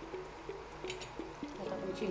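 Background music: a short melody of stepped notes that keeps repeating. A few faint clicks come about a second in, and a voice starts near the end.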